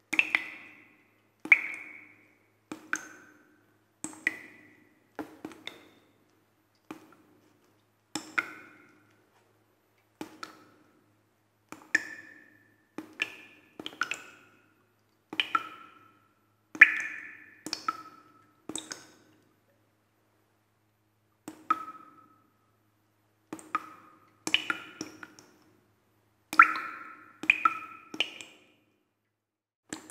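A sparse, uneven run of short pinging notes at changing pitches, roughly one a second. Each is struck sharply and dies away within about a second, with a pause of two seconds a little past the middle.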